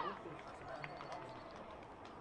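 Faint ambience of a football ground: a low murmur with distant, indistinct voices.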